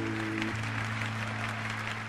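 Audience applauding over the band's final held chord. The chord breaks off about half a second in, leaving a low note under the clapping.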